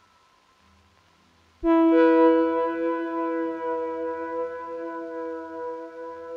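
Ambient synthesizer music: a faint held high tone, then about a second and a half in a loud keyboard chord struck sharply and held, a second note joining just after, slowly fading.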